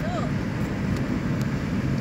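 Steady low road and engine rumble inside a car's cabin while driving.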